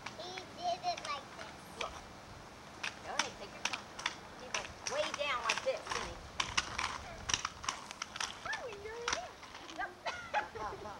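High children's voices and a woman's voice calling and babbling, unclear as words, with many sharp clicks and clatter scattered through.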